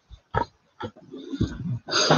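A man clearing his throat with short throaty grunts and sniffs, then a low, uneven hum for about the last second, just before he speaks.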